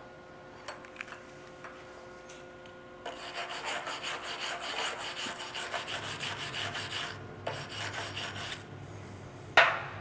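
Hand wire brush scrubbing slag off a freshly run 6010 stick-weld fillet bead on steel plate: rapid back-and-forth scraping strokes start about three seconds in and last about five seconds. A single sharp knock comes near the end.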